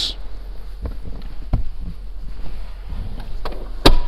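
Manual third-row seat of a Mercedes-Benz GLE being pulled upright by hand: a few faint clicks and knocks, then one loud, sharp clunk just before the end as the seatback locks into place.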